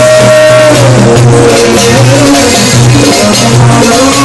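Live Gulf Arabic music on oud and electronic keyboard over a steady percussion rhythm, with a long held melody note at the start that bends downward.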